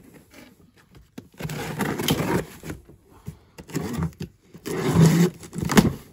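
A cardboard shipping box being opened: the packing tape is slit and the flaps are pulled back, in two rough scraping, rustling bursts with a few sharp clicks. The second burst is the louder.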